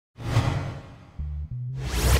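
Opening theme music for a news programme: a whoosh sound effect at the start, then low held bass notes that step to a new pitch partway through, with a second whoosh building near the end.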